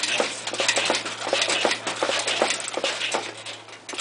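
Homemade steel-frame go-kart rattling and clanking with quick, irregular clicks and knocks as a person stands on it and shifts his weight on its soft suspension, its loose, not yet fully bolted parts knocking.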